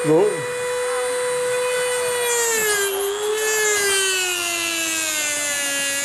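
Electric rotary tool (a Dremel) with a diamond cutting disc, cutting down a horse's overlong incisor teeth. A steady high motor whine sinks slowly in pitch as the disc bears on the tooth, with a grinding hiss building from about two seconds in.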